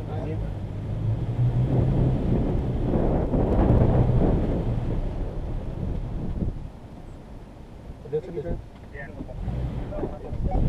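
Toyota Tacoma's engine running at low revs while the truck crawls over a rocky gravel trail, with the tyres crunching on the stones. The sound drops off about six and a half seconds in.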